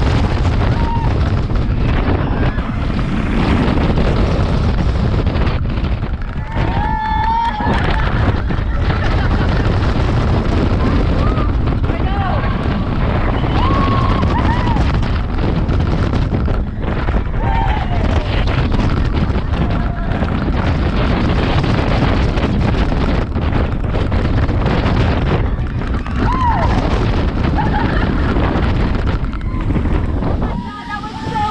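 Loud wind buffeting the microphone as a Pipeline surf coaster train races through its course, with riders' short screams and whoops breaking through several times.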